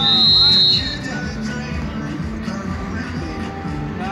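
Referee's whistle blown once, a single shrill blast of under a second that rises slightly in pitch, signalling play at a beach handball match. Music plays over loudspeakers with voices underneath.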